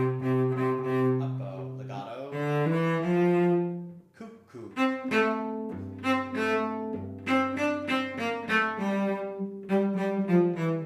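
A cello playing a simple bowed melody in F major, note after note, with a brief break about four seconds in. In the second half come short notes set apart by rests that imitate a cuckoo's call.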